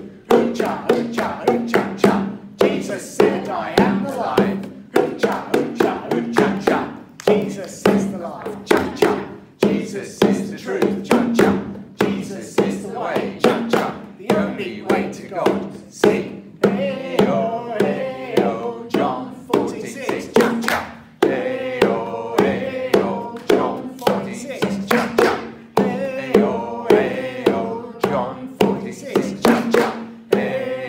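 A pair of bongos played by hand in a steady, quick rhythm, accompanying a group singing an upbeat, chant-like worship song with 'hoo cha cha' refrains.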